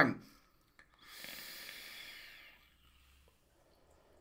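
A drag on a vape fitted with a Wasp Nano atomiser firing a 0.3-ohm coil at 65 watts: about a second in, a steady airy hiss of air being drawn through the atomiser, lasting about a second and a half and fading out. Near the end, a faint breathy exhale of the vapour.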